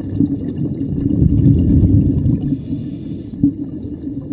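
Scuba diver's exhaled regulator bubbles, heard as a low bubbling rumble recorded underwater, swelling louder about a second in and easing off after two seconds.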